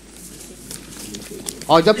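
Faint murmur of voices, then a man's voice begins speaking loudly in Hindi near the end.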